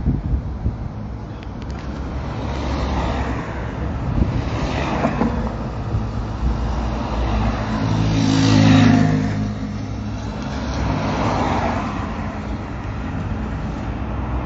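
Cars passing one after another on a city boulevard, each swelling and fading. The loudest passes close about eight to nine seconds in, its engine note plainly heard.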